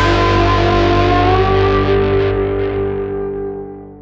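The closing chord of a rock band's song rings out on distorted electric guitar over bass, with one guitar note sliding slowly upward. The chord fades steadily away in the second half.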